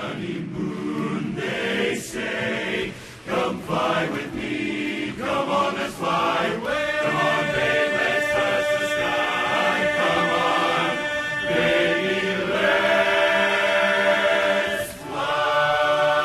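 Men's barbershop chorus singing a cappella in close harmony. Short, clipped chords come first, then sustained chords from about six seconds in, and a long held chord breaks off briefly near the end before the next held chord begins.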